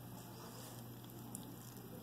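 Quiet room tone with a steady low hum, and one faint click a little past the middle.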